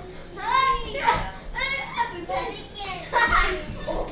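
Children shouting and squealing in high voices while they play, with a few soft thuds of pillows hitting.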